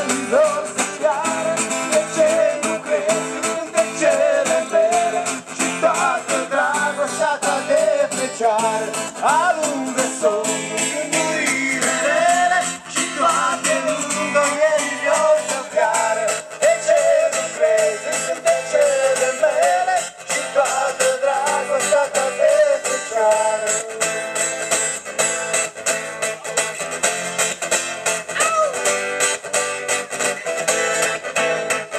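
Live acoustic folk music with no singing: guitars strumming while a violin carries a wavering melody with vibrato.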